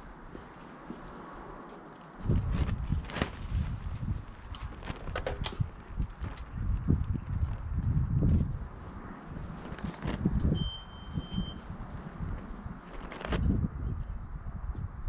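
Footsteps and a few sharp clicks of handling as the mains charging connection is made. About six seconds in, a faint, steady high-pitched whine begins and holds, and a brief beep sounds near ten seconds.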